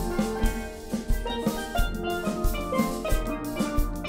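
Steel band playing: steel pans ringing out melody and chords over low bass pans, with a drum kit keeping a steady beat.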